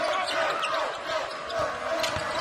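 Arena sound of a basketball game in play: a basketball bouncing on the hardwood court over steady crowd noise.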